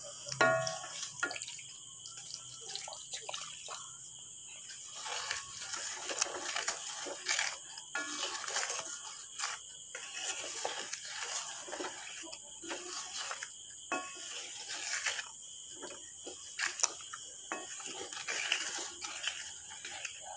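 Wooden spatula stirring and scraping a wet, spicy gooseberry pickle mixture in a metal pan, with water being poured into the pan at the start. Irregular short scrapes and clicks throughout, over a steady high-pitched insect chirring.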